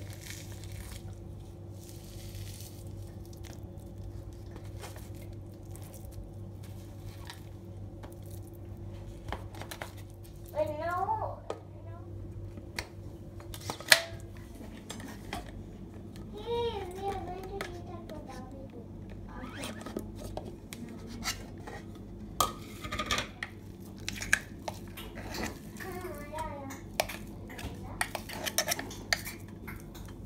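Kitchen handling sounds: metal utensils and cookware clinking, one sharp click about halfway through the loudest, over a steady low hum that stops about halfway. Children's voices chatter in the background.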